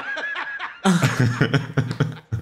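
Hearty laughter in quick bursts, a higher-pitched voice at first, then louder, deeper laughter from about a second in.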